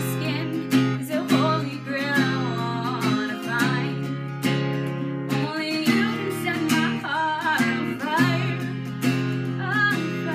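A woman singing with her own strummed acoustic guitar accompaniment, voice and chords carrying on steadily.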